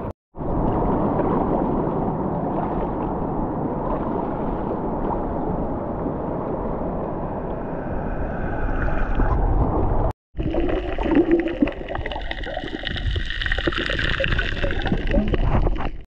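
Water sloshing and splashing around a GoPro and a surfboard as the board is paddled through shallow water, a steady rushing noise. After an abrupt cut about ten seconds in, it gives way to louder, more uneven rushing water with more hiss.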